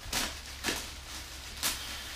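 Plastic wrapping around a new racing seat crinkling as it is handled, in three short rustles, over a low steady hum.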